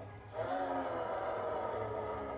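Film soundtrack: a held chord of steady tones comes in about half a second in and sustains over a low hum.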